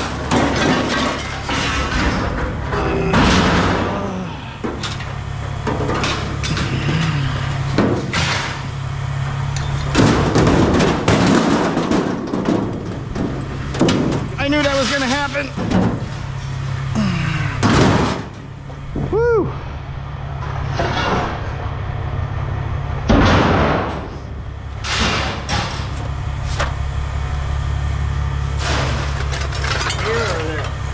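Scrap aluminum sheet and pipe being handled and tossed off a trailer: a string of metal clatters, bangs and rattles over a steady low hum, with voices in the background.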